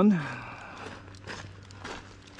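A man's voice finishes the word "one", then faint, soft footsteps on grass as he walks forward, under a steady low hum.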